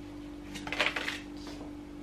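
Paper oracle cards being handled and pulled from a deck: a short burst of card rustling and snapping about half a second in, lasting about half a second, over a steady low hum.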